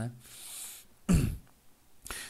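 A man takes a breath, then clears his throat once, briefly, with a short grunt that drops in pitch about a second in.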